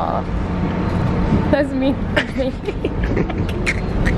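Steady low rumble of a subway train running, heard from inside the car, with indistinct voices talking over it.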